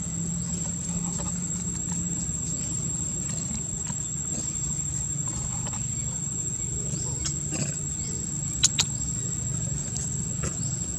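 Steady high-pitched insect drone over a low steady hum, with faint scattered ticks. Two sharp clicks come close together near the end.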